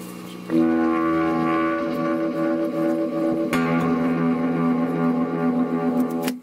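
Electric guitar chords ringing out through a Multivox Multi Echo tape echo unit with its reverb turned up: one chord about half a second in, a second about midway, each held and sustaining.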